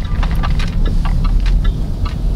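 Steady low rumble inside the cabin of a Land Rover Discovery SE SDV6 under way: its V6 diesel engine and tyres on the road.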